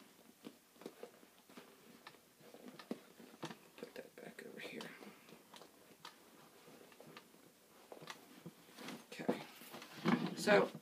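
Faint rustling and small irregular clicks of items being handled and shifted inside a leather tote bag.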